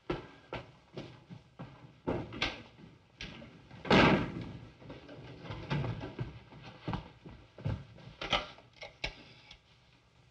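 Footsteps and knocks on a hard floor, with one louder bang about four seconds in, on an old 1940s film soundtrack.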